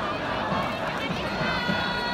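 Large baseball stadium crowd: many voices blend into a steady, dense din. About one and a half seconds in, a held high pitched tone with overtones starts over it.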